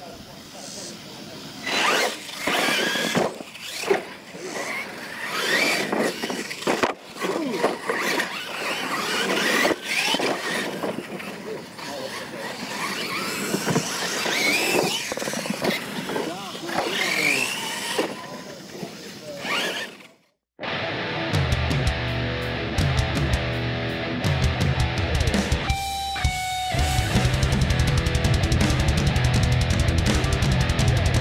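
Losi LMT electric RC monster trucks racing, their motors whining up and down in pitch as they accelerate and let off, with sharp knocks from jumps and landings. About twenty seconds in, the sound cuts out briefly and rock music with electric guitar takes over.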